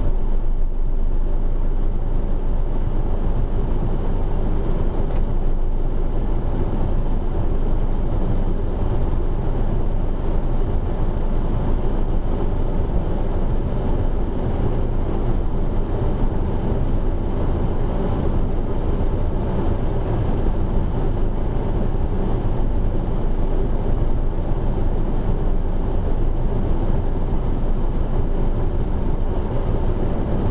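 Steady low rumble inside a car cabin while the car sits stopped with its engine idling.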